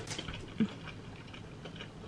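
Quiet chewing of a mouthful of food, with a few faint soft clicks.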